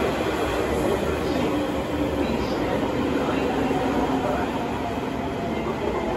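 Electric commuter train pulling slowly into the platform and running past close by, a steady rumble of the cars with a faint whine underneath.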